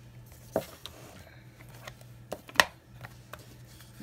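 Clear acrylic stamping blocks and card-making supplies being picked up and set down on a desk: a few light clicks and taps, the sharpest about two and a half seconds in, with paper handling between them over a faint steady hum.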